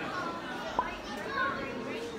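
Background voices of people in a busy public room, children's voices among them, with one short sharp sound just before a second in.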